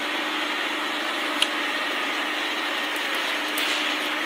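A steady mechanical whir with a faint low hum, as of a small motor or appliance running, holding an even level throughout; a single short click about a second and a half in.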